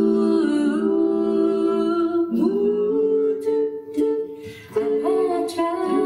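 A cappella vocal group singing sustained chords in close harmony, with no instruments. The held chord changes about two seconds in and again near the end, with a short dip in between.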